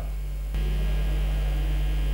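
Electrical mains hum on the recording: a low, steady buzz with overtones, stepping up in level about half a second in and then holding.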